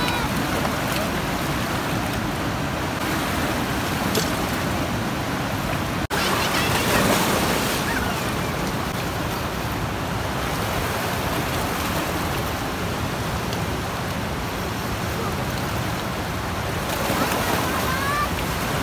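A fast river rushing and splashing over boulders close by: a loud, steady wash of white water, broken by a momentary dropout about six seconds in.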